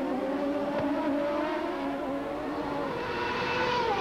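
CART Indy cars' turbocharged V8 engines running at speed in a steady, high engine note, which grows fuller and brighter near the end as the cars come closer.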